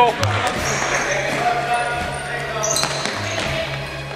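Sound of a youth basketball game on a gym court: a basketball bouncing on the hardwood floor, with spectators talking in the hall.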